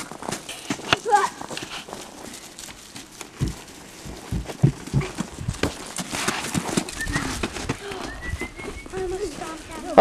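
Irregular crunching footsteps of children and puppies moving over crusty snow and straw, with faint voices. A couple of short high rising squeaks come in the second half.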